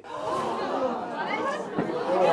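A crowd of people talking over one another, a steady, indistinct hubbub of many voices.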